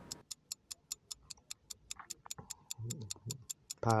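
Clock-ticking sound effect for a countdown timer: a fast, even ticking, several ticks a second. A man murmurs briefly near the end and then says one word.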